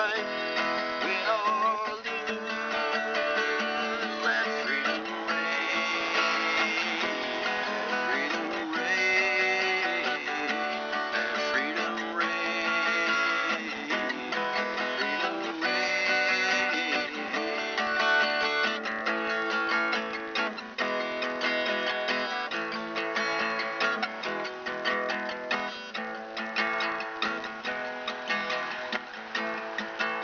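Instrumental guitar passage of a folk-rock song: strummed acoustic guitar with melody notes that glide between pitches over it, no vocals. It gets somewhat quieter in the last third.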